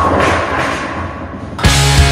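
Pop-punk rock song: a loud crash hits at the start and rings away, then the full band of guitars and drums comes back in about one and a half seconds in.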